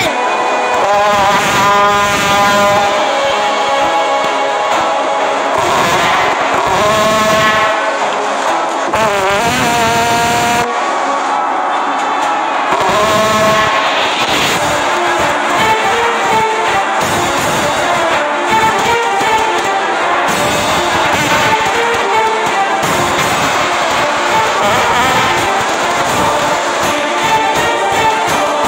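Trombone-gun blasts: brassy, fart-like trombone notes that wobble and slide in pitch, mixed with background music. The later part is mostly music.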